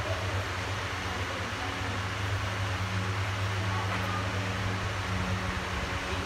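Steady low electric hum under an even background hiss: room tone with no distinct events.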